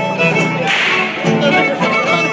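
Violin-led band playing a carnival dance tune, the melody held in sustained notes. A short noisy burst cuts through the music about two-thirds of a second in.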